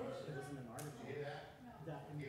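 Indistinct speech: people talking quietly in the room, with a single sharp click just under a second in.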